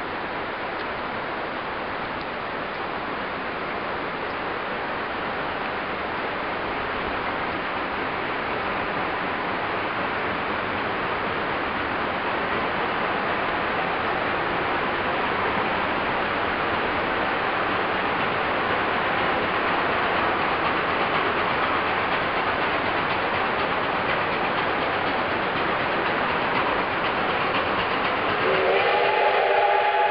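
Durango & Silverton narrow-gauge steam train approaching: a steady rushing noise slowly grows louder, then near the end the locomotive's steam whistle sounds a held chord.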